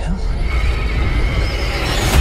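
Film trailer sound design: a deep, steady rumble with a thin high whine that comes in about half a second in and builds toward an impact.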